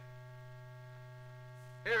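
Steady electrical hum with several faint steady tones above it and nothing else, the background hum of an old film soundtrack. A man's narration comes in right at the end.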